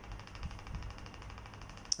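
Quiet room tone with a low, steady background hum and faint hiss.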